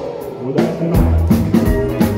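Live rock and roll band playing, with drum kit and electric guitar. The music dips briefly at the start, then drum strokes come back in.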